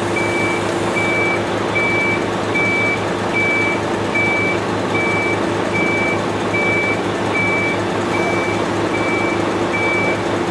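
A truck's reversing alarm beeping steadily, short high beeps a little under a second apart, over a heavy truck engine running.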